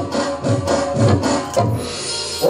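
Live Gujarati Ramamandal folk music: steady drum beats and sharp metallic clashes over held instrumental tones, with the drumming dropping away near the end.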